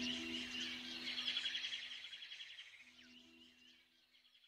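Soft background music with bird chirps and trills layered in, over a few held low notes, fading away.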